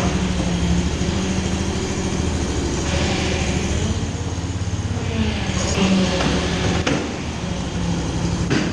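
Home-built half-scale tank on the move: its engine and hydraulic drive running with a steady hum while the steel tracks rattle over the rollers. The noise rises briefly about three and six seconds in as it turns.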